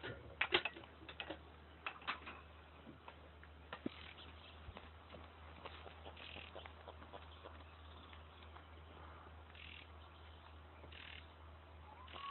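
Quiet stretch: a steady low hum, a few soft clicks in the first couple of seconds, and several faint, short high chirps later on.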